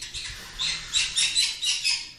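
A young green-cheeked conure calling in a quick run of short, high-pitched chirps that start about half a second in.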